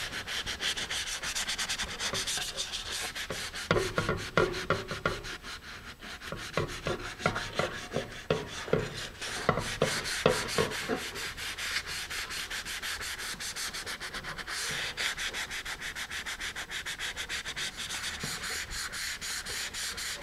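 Fine-grit sandpaper on a hand sanding pad rubbing in rapid back-and-forth strokes over dried carpenter's wood filler on a fiberglass rocket's fin fillet, feathering the filler down toward the epoxy beneath. The strokes are heavier through the middle stretch.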